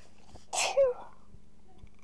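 A person sneezes once, sharply, about half a second in: a hissy burst followed by a short voiced sound falling in pitch.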